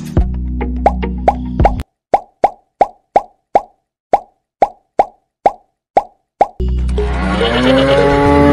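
A run of short cartoon-style 'plop' pop sound effects, each with a quick drop in pitch, about two or three a second, laid over background music at first and then alone in silence through the middle. Background music with sliding tones comes back near the end.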